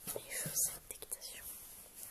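Soft whispering in two or three short breathy bursts, the words not made out.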